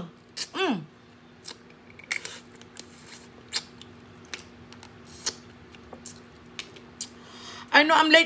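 Boiled crawfish being peeled and eaten by hand: scattered sharp clicks and wet smacks of shells cracking and mouth sounds of chewing, a few each second.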